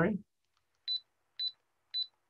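Three short, high beeps about half a second apart: the buttons of a digital timer being pressed as it is reset.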